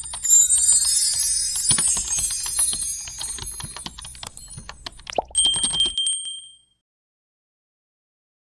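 Outro sound effect of glittery twinkling chimes and jingles. About five seconds in comes a short click and a bell-like ding with two ringing tones, the kind of sound used for a subscribe button being pressed. It all fades and stops suddenly before the end.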